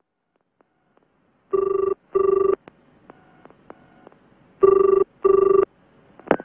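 Telephone ringing with the British double ring: two pairs of short rings, each pair two brief rings close together, the pairs about two seconds apart.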